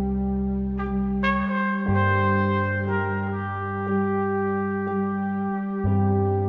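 Film-score music: a jazz trumpet plays a slow, subtle film-noir line over a minimalist accompaniment of held low bass notes. New trumpet notes enter about a second in and again around two and three seconds in.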